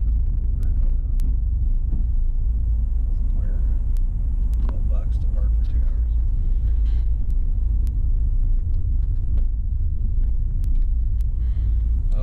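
Steady low rumble of a car heard from inside its cabin as it moves slowly in traffic, with faint voices talking about halfway through.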